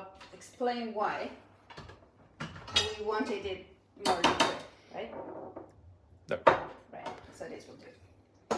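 A stick blender's metal shaft knocking and scraping against a tall glass jug of thick tahini sauce. It gives a run of separate clinks and knocks with short ringing, the sharpest about six and a half seconds in.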